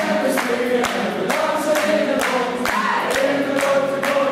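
Live band performance of an upbeat song: voices singing together over acoustic guitars and a drum kit, with a steady beat of about two hits a second.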